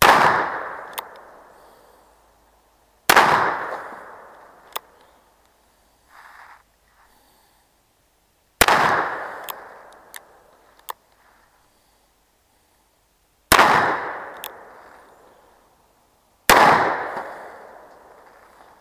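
Five shots from a black-powder cap-and-ball Remington revolving carbine, a few seconds apart, each a sharp report with a long fading echo. A short click follows most shots.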